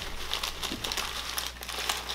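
Packaging crinkling and rustling as it is handled, with many small, irregular crackles.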